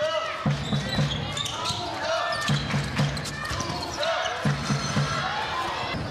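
Handball game sounds in an arena: the ball bouncing on the court, shoe squeaks from the players, and crowd voices in the hall.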